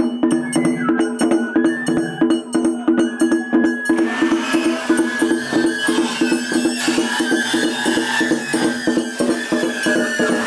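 Japanese festival float music (hayashi): a high flute melody over a quick, steady beat of drums and percussion, about four strokes a second. From about four seconds in, a broad wash of noise rises under it.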